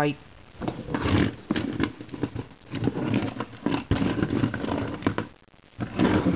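Indistinct vocal sounds from a person, with a couple of sharp knocks about one second and about four seconds in.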